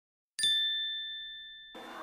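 A single bright bell-like chime sound effect, struck about half a second in after dead silence, ringing with a clear two-note tone and fading away over about a second.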